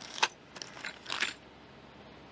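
Small metal parts clinking against each other inside a plastic bag as it is lifted out of a plastic storage bin. There is a sharp click about a quarter second in, a few lighter clinks, and a short jangle just past a second in.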